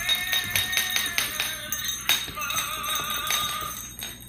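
Toy singing Christmas hat playing its song, a melody over a steady beat, which stops right at the end.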